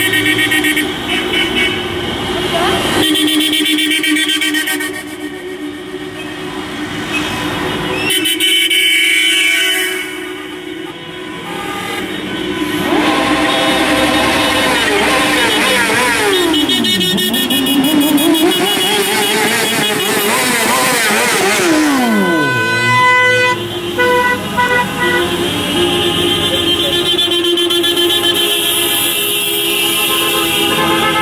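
Many taxi horns honking at once, long blasts and short toots overlapping. About halfway through, a wailing tone sweeps down and back up in pitch twice over the horns.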